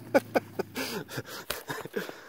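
A person's brief laughter, then a few scattered sharp crunches and clicks of footsteps in snow.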